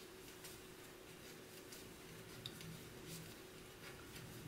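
Faint, evenly spaced ticks of wooden knitting needles, about three every two seconds, as stitches are knitted one after another, over a low steady hum.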